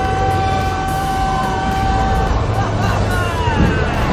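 Film soundtrack from a dragon-flight scene, mixing music and effects: a long steady high tone over a low rumble breaks off about two seconds in, then several falling, swooping sounds follow.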